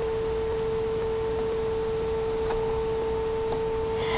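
A steady whine: one pure unchanging tone with a fainter higher overtone, over a constant background hiss.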